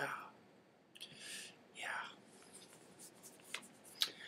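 A man breathing out twice, soft and breathy, after a sip of a dry martini, then a faint click.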